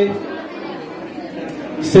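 A man speaking through a microphone pauses for about a second and a half, then resumes near the end. During the pause, the low chatter of a crowd in a large hall carries on.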